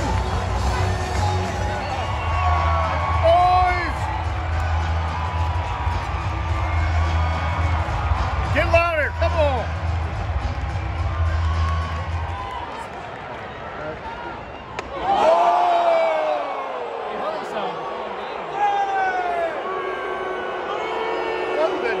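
Ballpark PA music with a heavy bass beat over the chatter of a stadium crowd; the music stops about twelve seconds in, and a few seconds later the crowd's voices rise in a burst of cheering.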